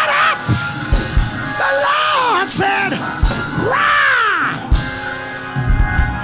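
Church music with held chords and a few low drum hits backs a preacher's wordless, sung-out shouts that swoop up and down in pitch. This is the chanted, shouting climax of a sermon.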